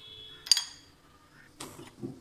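A metal spoon knocks once against a stainless steel bowl about half a second in, giving a short ringing clink, followed near the end by a brief scraping rustle of the spoon against the bowl.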